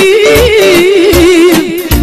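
A male singer holds one long, wavering note, ornamented with quick turns, over a Serbian folk-pop backing band with a steady low drum beat.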